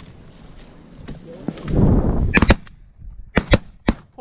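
A volley of shotgun fire at ducks flying over the blind: five sharp shots in about a second and a half, in two quick pairs and then one more. A low rumble of movement in the blind comes just before the first shot.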